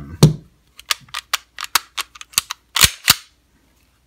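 A quick series of about a dozen sharp metal clicks and clacks as a Sig Sauer P225-A1 pistol and its extended magazine are handled, the two loudest and heaviest near three seconds in.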